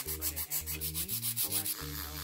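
A long press-on nail being filed by hand with an emery board, in quick back-and-forth rasping strokes, over background music with a low bass line.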